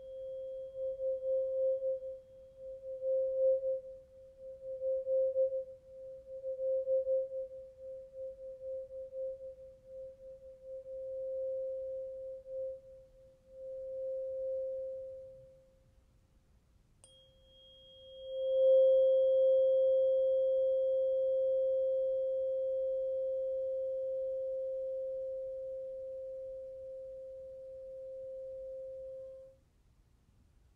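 A tuning fork ringing one steady, pure tone that wavers rapidly in loudness, then fades away. About halfway through it is struck again with a faint tap and rings louder, slowly dying away until it is cut off suddenly just before the end.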